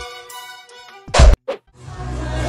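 Background music fades out, then a single loud thunk comes about a second in, followed by a shorter, quieter thud.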